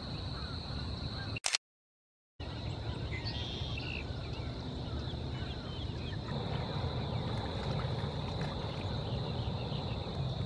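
Marsh ambience: insects chirring in a steady high drone over a low background rumble, with a few faint bird calls a few seconds in. The sound cuts out completely for just under a second about one and a half seconds in.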